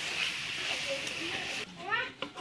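Vegetable curry sizzling in a steel karahi over a wood fire as it is stirred; the sizzle cuts off abruptly after about a second and a half. A few short rising cries, a voice or an animal, follow near the end.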